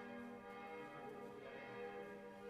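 Church bells ringing, heard faintly, their overlapping tones sounding on without a break.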